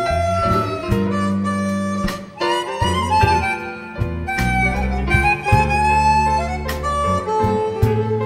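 Live blues band with a harmonica taking the lead, playing long notes that bend and slide in pitch, over bass, guitar and drums keeping a steady beat.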